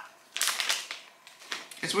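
Plastic sweet packet and wrappers crinkling as they are handled. It comes as a burst of crackly rustles about half a second in, and again shortly before the end.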